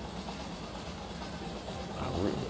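Steady low background hum and hiss, with no distinct impacts or calls.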